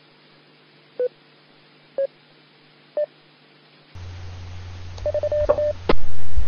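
Three short beeps from an amateur radio repeater, one a second, each slightly higher in pitch than the last, over faint hiss. About four seconds in, the repeater audio ends and a low hum with a few faint clicks takes over.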